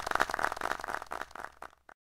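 Scattered hand clapping fading away, then cut off abruptly into silence near the end.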